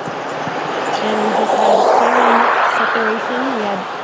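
A crowd cheering, swelling to a peak about two seconds in and easing off, with voices over it, in reaction to the confirmation of fairing separation.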